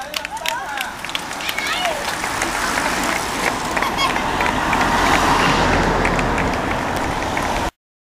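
Roadside spectators clapping and shouting as cyclists ride by, then the rising noise of a team car driving past, with a low rumble building. The sound cuts off suddenly near the end.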